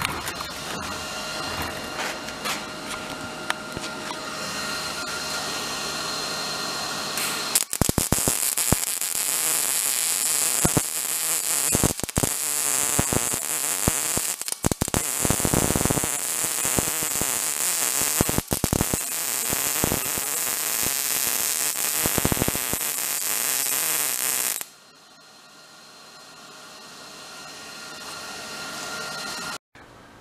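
Wire-feed (MIG) welding on a steel frame. The arc gives a loud, continuous crackling sizzle for about seventeen seconds, starting about eight seconds in, with a few brief breaks where the arc stops and restarts. Before it there is a steadier, quieter hum with faint tones.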